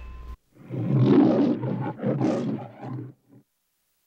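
The Metro-Goldwyn-Mayer logo's lion roaring three times over about three seconds, with a short, softer sound at the end. Just before it, the last held chord of the orchestral end music cuts off.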